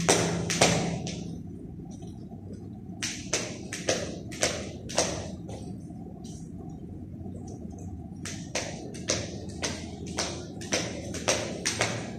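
Skipping rope and feet tapping on a tiled floor during single-rope speed jumping: runs of quick, sharp taps, two to four a second, thinning out now and then. A steady low room hum sits underneath.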